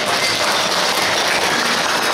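Audience applauding steadily during a Peking opera aria performance.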